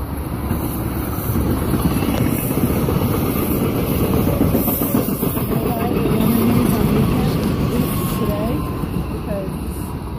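A SEPTA Silverliner IV electric multiple-unit commuter train passes close by with a steady rumble of steel wheels on the rails and rushing air. The sound swells as the cars go by and eases off near the end.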